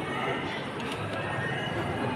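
Indistinct background chatter in a large hall, with faint light clicks of a pyraminx puzzle being turned by hand.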